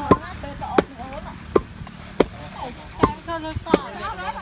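A long wooden pestle pounding young rice grains in a mortar to flatten them into ambok: five sharp thuds, roughly evenly spaced, with people talking.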